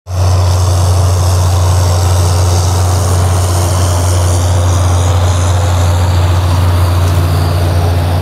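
John Deere tractor's diesel engine running steadily under load as it pulls a Kuhn Cultimer cultivator.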